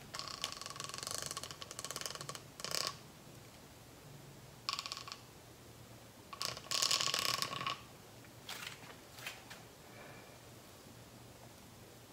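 Metal ball chain, a ceiling-fan pull chain, rattling in several separate bursts as it is handled, the longest lasting about a second and a half.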